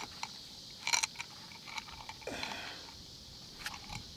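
Faint handling noise: a few light clicks, the clearest about a second in, and a short soft rustle past the middle, over quiet outdoor hiss.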